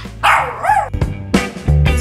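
A small dog gives one drawn-out cry whose pitch wavers up and down, lasting under a second. Music with a steady beat and heavy bass then starts about a second in.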